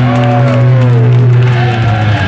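A live punk band's distorted guitars and bass hold a loud, sustained low chord. From about half a second in, high pitches slide downward over it, and the held chord thins out near the end.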